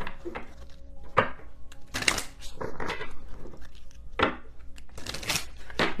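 A deck of oracle cards being shuffled by hand: about five short rustling swishes, roughly a second apart.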